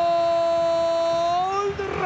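A football commentator's long goal shout: one drawn-out 'gol' held on a single steady pitch, lifting slightly just before it breaks off near the end.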